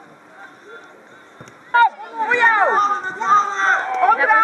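Young players' voices shouting over one another on an outdoor football pitch, starting about halfway through after a quieter spell. They are preceded by a single sharp knock.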